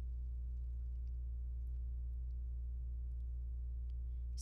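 Steady low electrical hum with an even buzz above it, mains hum in the recording, with no other sound.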